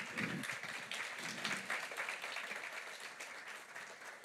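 Audience applauding, the clapping gradually tapering off.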